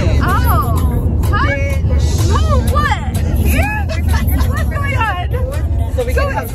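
High, animated voices over the steady low rumble of a car cabin on the move.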